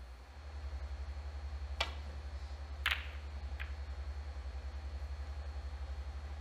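Snooker balls clicking during a shot: a sharp click of the cue striking the cue ball, a louder ball-on-ball click about a second later, and a lighter click just after. A low steady hum runs underneath.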